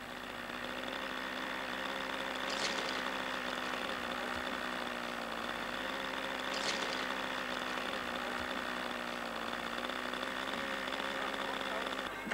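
A small model-aircraft engine running steadily at an even, nearly unchanging speed, with two short bursts of noise a few seconds apart.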